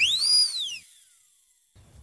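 A single whistle-like sound effect that swoops up steeply in pitch and glides back down, lasting under a second.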